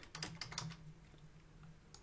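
Computer keyboard typing: a quick run of key clicks in the first second that then thins to a stray click or two. A faint low hum runs underneath.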